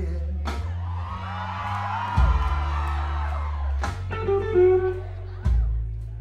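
Live blues-rock trio playing an instrumental passage: electric guitar lead with bent, gliding notes over held bass guitar notes, with drum cymbal hits three times.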